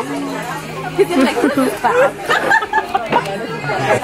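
Several people chattering at once, voices overlapping without one clear speaker.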